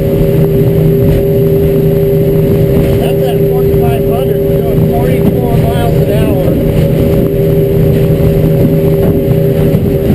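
Evinrude E-Tec 135 high-output two-stroke outboard running at steady revs with the boat under way, heard from inside the enclosed cabin over the rush of the hull through the water.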